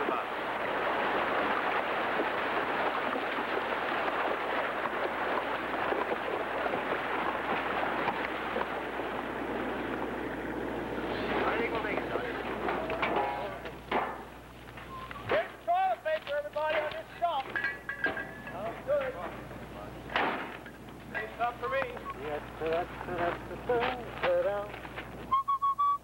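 Splashing, rushing water as horses and men wade across a river, a dense steady wash that fades out about twelve seconds in. After it come scattered sharp knocks and short pitched calls.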